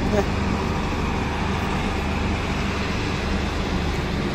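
Steady city road-traffic noise, an even hum and hiss with no single vehicle standing out.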